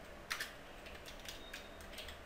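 Faint typing on a computer keyboard: a quick run of separate key clicks, the first, about a third of a second in, a little louder than the rest.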